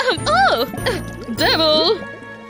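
Background music with a light tinkling, and a woman's voice making two wordless sounds that rise and fall in pitch.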